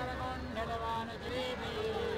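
Indistinct voices of several people talking at once, over a steady low hum.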